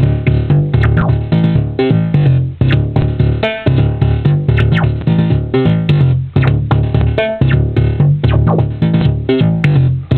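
MeeBlip monophonic DIY synthesizer playing a fast repeating sequenced bass line, about three to four notes a second, with a harsh, raw tone. The filter envelope amount is being driven by an external control voltage, so the brightness of each note's filter opening keeps changing.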